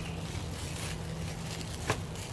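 Plastic wrap crinkling faintly as hands handle a wrapped skein of dyed wool, with a single sharp click near the end as it is set into a wire canning rack. A steady low hum runs underneath.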